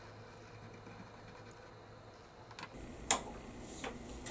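Faint pencil drawing on paper. About three seconds in comes a sharp tap and then a lighter one, as the pencil is set down on the wooden tabletop.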